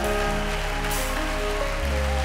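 Congregation clapping over soft worship band music with long held chords.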